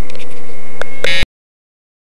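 Loud handling and wind noise on a small handheld camera's microphone, with a few clicks, cutting off abruptly to silence just over a second in.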